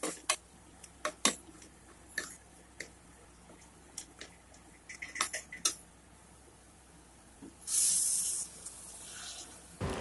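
Metal ladle scraping and clinking against an aluminium pressure cooker while stirring onion-tomato masala, in scattered strokes. A short hiss, the loudest sound, comes about eight seconds in.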